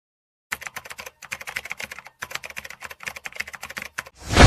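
Rapid typing on keys: a fast run of clicks, about ten a second, starting half a second in, with two brief pauses.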